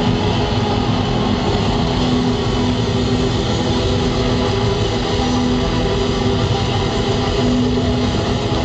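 Live rock band's distorted electric guitars held in a loud, steady drone without a clear beat, a few low notes swelling and fading within the noise.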